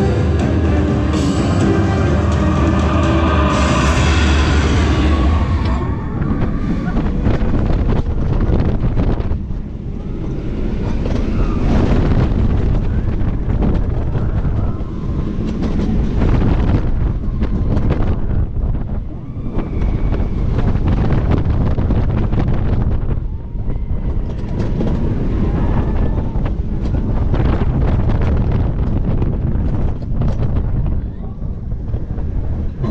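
Ride soundtrack music in the coaster's undersea screen tunnel for the first six seconds or so. Then the rush of wind on the microphone and the rumble of a launched steel roller coaster train running along its track.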